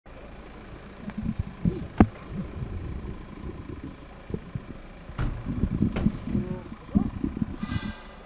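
A Peugeot saloon pulling up and stopping on cobblestones, with a sharp click about two seconds in and another just after five as its door is opened and shut, among nearby voices.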